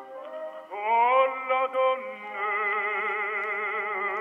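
Old, narrow-band recording of an operatic baritone singing: a short phrase, then a long held note about midway with a fast vibrato, which is typical of singers of that era.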